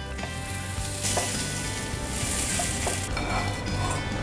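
Rava-coated surmai (king fish) pieces shallow-frying in hot oil in a pan: a steady sizzle, with a few light touches of a spatula against the pan as the pieces are moved.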